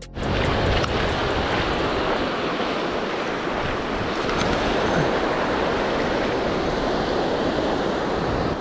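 Steady rush of ocean surf on the beach, with wind buffeting the microphone.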